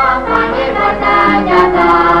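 A choir singing a Malay-language revolutionary song to music, on the line 'Junjung panji bersenjata'.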